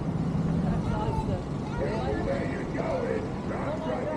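Children's voices calling outdoors, with the low running of a vehicle engine underneath that fades after about a second and a half.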